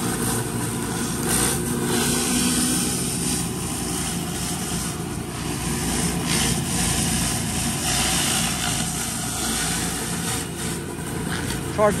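Whisper Wash 19-inch Classic surface cleaner, its four-tip spray bar spinning under the hood, giving a steady hiss as the high-pressure jets scour wet concrete.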